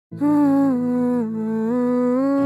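Background music opening with a solo voice humming a slow, held melody over a low sustained drone; the note steps down about a second in and rises again near the end.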